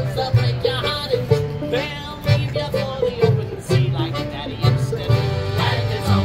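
Live acoustic band of guitar, accordion, fiddle and upright bass playing a folk tune, the plucked bass marking steady low notes under the melody.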